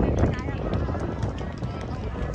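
Background chatter of several people talking at a distance, with music playing behind it.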